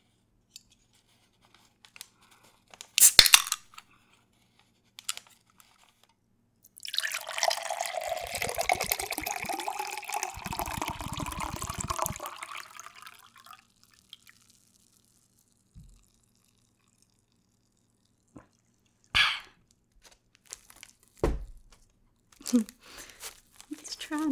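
A drink can cracked open with a short, sharp burst about three seconds in, then tea-lemonade poured from the can into a tall glass for about six and a half seconds. A few light knocks and a thump near the end as the can or glass is set down.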